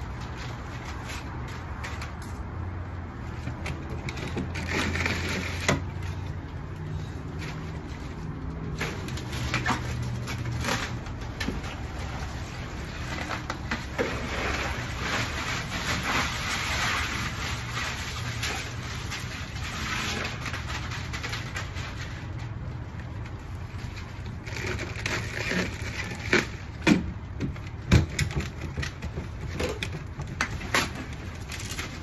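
Bagged ice being emptied from plastic bags into a plastic drum nearly full of water: ice cubes rattling and splashing, plastic bags crinkling, with several sharp knocks near the end.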